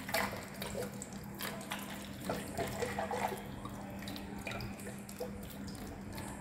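Water pouring and trickling into the model's inlet pipe, with small irregular splashes throughout, over a steady low hum.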